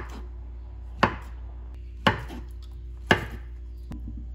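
A kitchen knife cutting through a peeled banana and knocking on a wooden cutting board: three sharp chops about a second apart, over a steady low hum.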